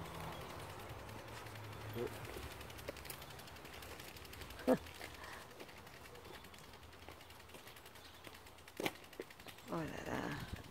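Quiet outdoor ambience with a low steady hum, fading after the first couple of seconds. It is broken by a few brief faint sounds and one sharp click near the end.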